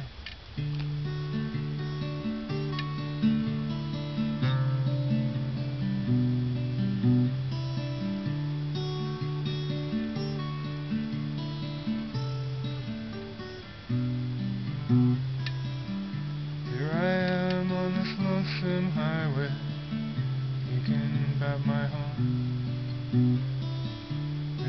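A person coughs once, then an acoustic guitar starts playing the introduction of a slow ballad: a repeating pattern of low bass notes and chords, picked and strummed.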